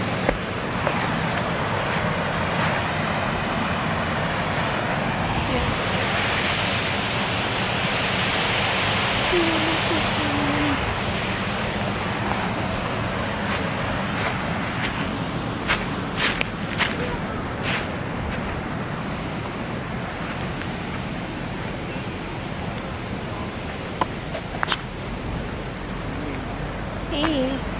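Steady rush of water from a small waterfall, swelling a little brighter for a few seconds near the middle. A few short clicks sound in the second half.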